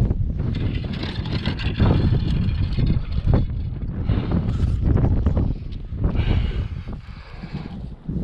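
Wind buffeting the microphone in a heavy, uneven rumble, with a few short knocks and rustles from a landing net and fishing rod being handled on concrete.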